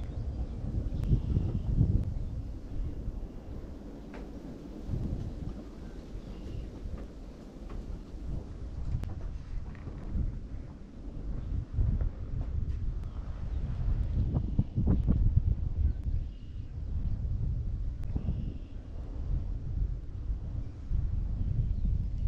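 Wind buffeting the microphone in uneven gusts, a low rumble that swells and fades. A few faint bird chirps come through now and then.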